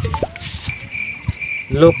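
Insects, likely crickets, chirping steadily in rapid pulses from about two-thirds of a second in, with a man starting to speak near the end.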